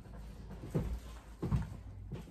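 Two soft, low thumps about three-quarters of a second apart: handling noise as a hot glue gun is worked and a lemon is pressed onto a grapevine wreath on a table.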